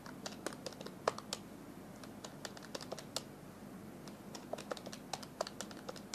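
Keys being pressed on a handheld calculator: a run of light, irregular clicks, several a second.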